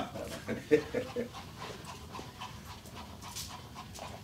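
Hairbrush drawn through long hair in soft, quick swishing strokes, with a few brief faint voice sounds in the first second.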